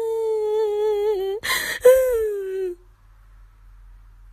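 Kitten giving a long, drawn-out wailing mew that slowly falls in pitch. About a second and a half in it breaks off for a short breathy burst, then comes a second, shorter wail that dies away a little before the three-second mark.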